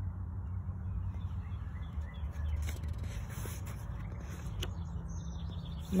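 Outdoor background with a steady low hum and faint bird chirps, and a paperback picture book's page being turned, its paper rustling briefly around the middle.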